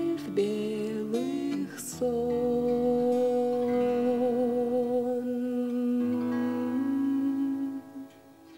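Woman's voice singing over strummed acoustic guitar, then holding a long wordless note with vibrato for several seconds over the guitar's final chords. The music stops just before the end.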